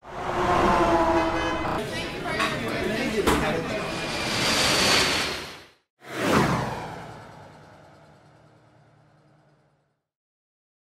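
Intro sound effects for an animated title: a dense swell that builds and cuts off abruptly, then a whooshing hit with a falling sweep that fades out over about four seconds.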